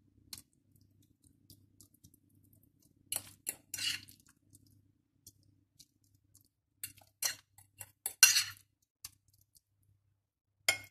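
A metal fork scraping and clinking against a glass bowl and a glass baking dish while spreading a thick cheese-and-yogurt mixture over fish fillets. A few short clinks and scrapes come in two clusters, the loudest near the end.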